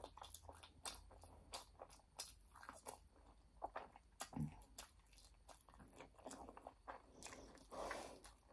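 A person chewing food close to the microphone: faint, irregular crunches and wet mouth clicks, with a brief low hum near the middle.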